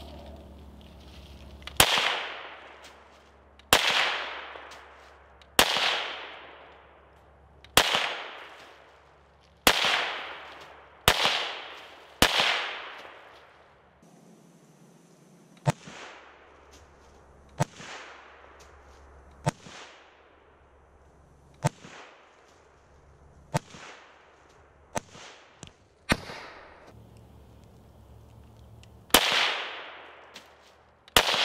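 FN PS90 carbine firing 5.7x28mm rounds as slow, single semi-automatic shots about two seconds apart, each loud crack trailing off in a long echo. For a stretch in the middle the shots are much fainter, heard from downrange at the targets, then turn loud again near the end.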